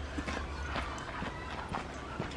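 Footsteps crunching on a gravel path, a walker passing close by, in an uneven run of several steps a second.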